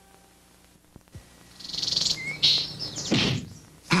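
Cartoon-style birds chirping and tweeting, starting about a second and a half in, with a short rising whistle, and then a swooping sound near the end.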